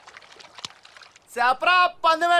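A man laughing loudly, starting about one and a half seconds in after a quiet stretch of faint background noise.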